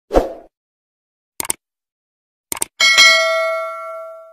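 Sound effects of an animated subscribe-button graphic: a short pop, two quick double clicks, then a bright bell ding that rings out and fades slowly.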